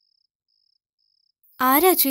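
Faint, high cricket chirping, evenly repeated about twice a second, over an otherwise quiet room; a woman starts speaking near the end.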